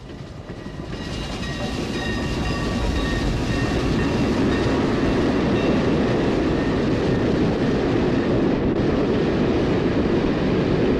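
Archival recording of a Norfolk and Western steam-hauled passenger train arriving at a station. The rumble of the train swells over the first few seconds, with faint high ringing tones, then holds at a steady heavy rumble as it draws in.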